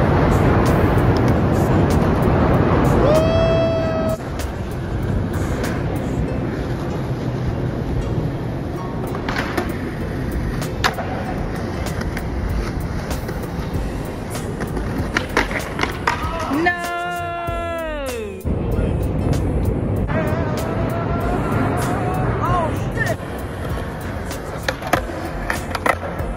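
Skateboard wheels rolling over a concrete skate park surface, broken by a few sharp clacks of the board's tail and wheels hitting the ground.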